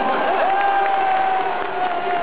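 Baseball stadium crowd cheering and clapping, with one long held note rising above the crowd noise from about half a second in.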